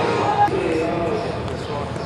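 Batting-practice ambience: indistinct voices talking, with a single sharp knock about half a second in.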